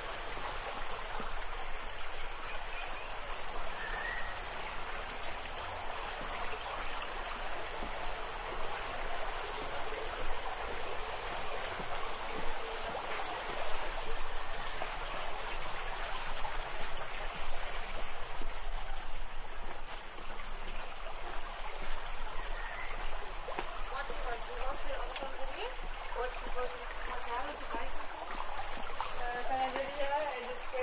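Water running steadily in a small stone irrigation channel beside a cobbled street, an even rushing trickle; voices come in near the end.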